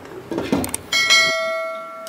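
Clay pot knocking against another clay pot as it is set down over it: a soft scrape, then about a second in a sudden clink that rings like a bell and fades over about a second and a half.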